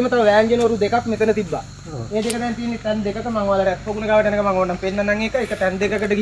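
A man talking continuously in an explanatory tone; only speech is heard.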